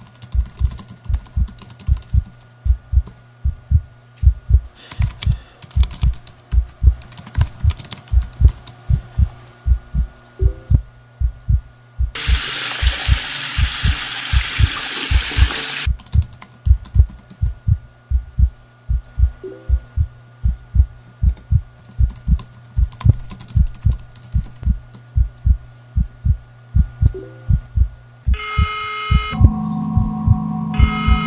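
Computer keyboard typing in short bursts over a steady rhythm of loud, low, heartbeat-like thumps. About twelve seconds in, a loud hiss cuts in for about four seconds, then stops suddenly. Near the end, a few steady electronic tones begin.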